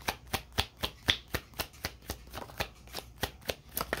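A tarot deck being shuffled overhand, packets of cards flicked from one hand onto the other in a steady patter of about four soft clicks a second.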